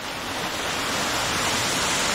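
Waterfall: a steady rush of falling water splashing on rock, growing slightly louder.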